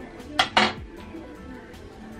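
Two quick clinks of small hard objects knocking together, about half a second in, over faint background music.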